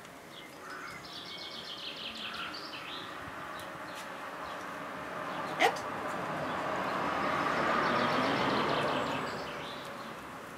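Small birds chirping in quick repeated trills in the background. A brief sharp sound comes just past halfway, then a broad rushing noise swells and fades over the last few seconds.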